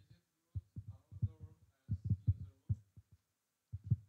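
Muffled, bass-heavy voice in short, irregular syllable-like bursts with gaps of silence between them, too indistinct to make out words.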